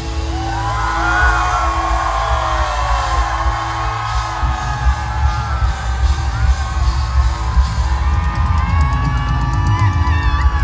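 Concert crowd cheering and screaming with high whoops as a song ends, over a held, sustained note from the band and a low rumble.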